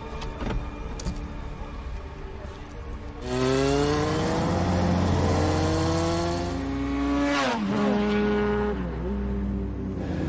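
Motorcycle engine coming in loud about three seconds in and accelerating, its pitch rising for several seconds, then falling sharply and running on at a steadier pitch.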